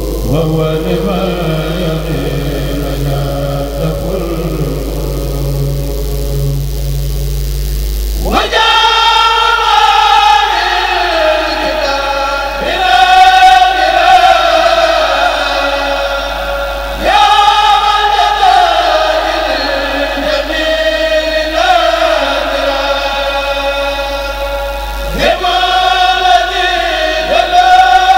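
A Kourel of male voices chanting Mouride khassaïdes unaccompanied through microphones. A lower-pitched passage gives way, about eight seconds in, to louder high-pitched voices, which come in again with fresh phrases at about 17 seconds and near the end.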